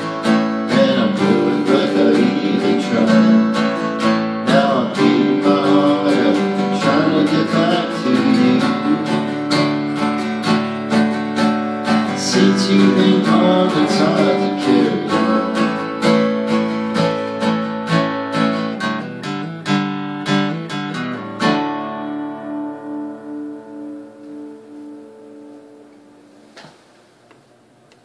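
Acoustic guitar strummed in a steady rhythm that grows gradually softer, then one final chord left to ring out and fade over several seconds, closing the song. A single faint knock comes near the end.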